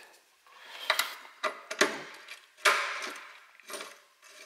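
Handling of a thick rubber hose and its metal end fitting against a finned cooler: several short clinks and knocks, the loudest a little past the middle, with rubbing between them.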